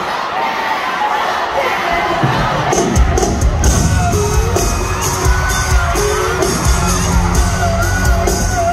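Live country band playing in an arena, heard from among a cheering crowd: a sung vocal over a light intro, then the full band with heavy bass and drums kicks in loudly about two and a half seconds in.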